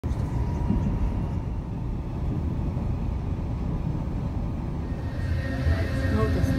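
Steady low rumble of a moving vehicle.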